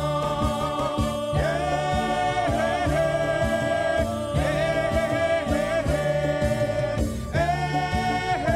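A group of voices singing long, held phrases together over a steady drum beat, as stage performance music.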